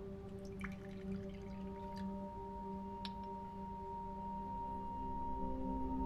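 Quiet background score of sustained, ringing held tones, with a higher tone joining about a second and a half in. A few faint light clicks sound in the first half.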